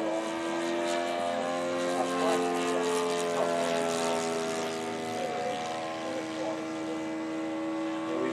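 Radio-controlled P-51 Mustang model's O.S. 95 engine and propeller running at steady high throttle in flight, an even buzzing note that wavers only slightly in pitch as the plane moves overhead.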